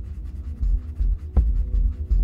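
Graphite pencil shading on sketchpad paper in short scratchy strokes, over background music with a low pulsing beat and held tones.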